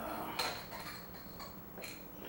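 Light metallic clinks and knocks as the tire and rim come off an electric scooter's rear hub motor. A sharp clink a little way in rings on briefly, and a second click comes near the end.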